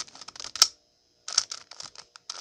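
Plastic clicks and clacks of a 3x3 Rubik's cube's layers being turned by hand, in two quick bursts with a short pause between them. The cube is being tested for inverted corner cutting, which on this cube works less well.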